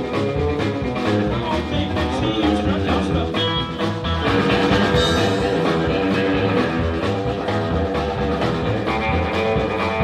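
Live blues-rock band playing: electric guitar over bass guitar and a drum kit keeping a steady beat.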